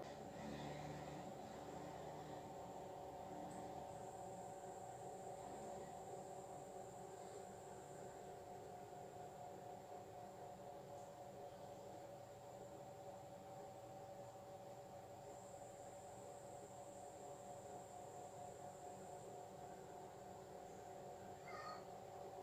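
Faint room tone with a steady hum of a few constant tones, and a short faint chirp near the end.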